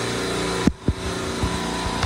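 Supermarket R22 refrigeration compressor rack running with a steady mechanical hum. Two short low thumps come about two-thirds of a second in, and the hum dips briefly.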